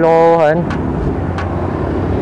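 A voice holding one drawn-out note for about half a second, then a steady low hum of vehicle engines and street traffic.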